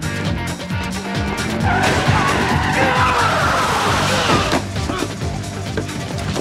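Dramatic TV action-score music, with a car's tyres squealing in a skid for about three seconds in the middle, which is the loudest part.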